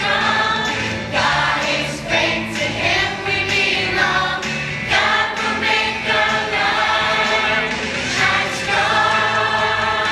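A group of young children singing together over instrumental accompaniment, continuous throughout.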